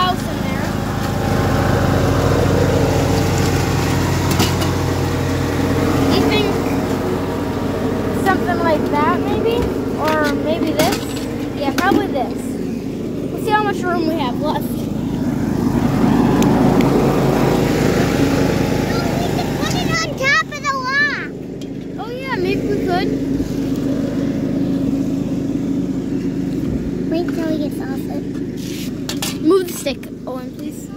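An engine runs steadily, its low hum thinning out about two-thirds of the way through. Groups of short, high, warbling chirps come over it several times.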